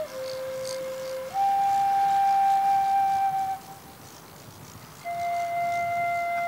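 Background music: a solo flute playing slow, long held notes. A lower note gives way to a higher one held for about two seconds, and after a pause of over a second another note begins near the end.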